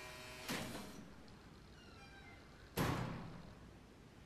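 Two heavy, echoing thuds of a steel door being shut, the first about half a second in and a louder one near three seconds in, each ringing away in a hard, reverberant room.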